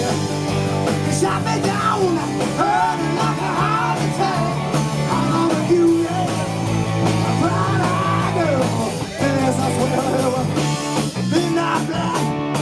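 Live rock band playing with electric guitars, bass and drums, a male singer's voice over it throughout.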